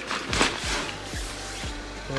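Background music with a steady, punchy kick-drum beat.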